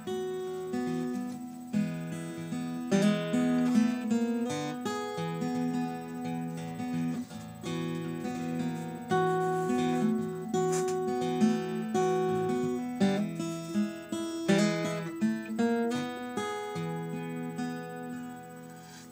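Acoustic guitar played through a blues turnaround in E, picked notes ringing and overlapping as the pitches move.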